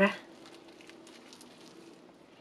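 Faint crinkling of disposable plastic gloves and soft handling of raw duck skin as a stuffed duck is laced shut with a trussing needle, over a low steady hum. A spoken word ends just at the start.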